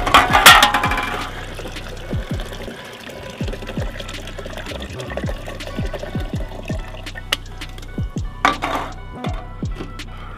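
A hip-hop beat plays while carbonated water is poured from cans into tall glass boots, splashing and fizzing. The pouring is loudest in the first second and again near the end.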